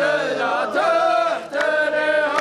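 A row of men chanting a line of poetry together in unison, drawing out long held notes, in the chanted call-and-response style of Saudi qaf poetry, with hand claps.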